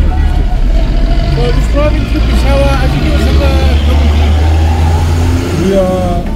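Low, steady drone of a car's engine and tyres heard from inside the cabin while driving in city traffic, with faint voices in the background. The low drone falls away about five and a half seconds in.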